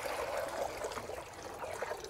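Water poured from a bucket into a shallow metal pan, splashing steadily and thinning out near the end.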